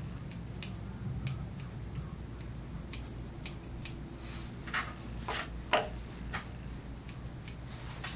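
Grooming scissors snipping through a schnauzer's leg hair in short, irregular cuts, a few louder snips about halfway through.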